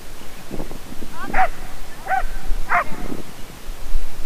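Dog barking three short times in quick succession, with wind rumbling on the microphone.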